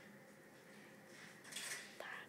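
A quiet room with one short rustle about one and a half seconds in.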